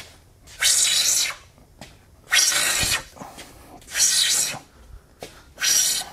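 Hand plane taking four even strokes along the edge of a curly pecan slab. Each shaving stroke lasts under a second, about one and a half seconds apart, as the joint edge is planed.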